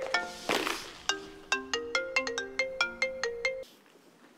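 Mobile phone ringtone: a quick melody of short notes, cutting off about three and a half seconds in as the call is answered. A brief rustle about half a second in.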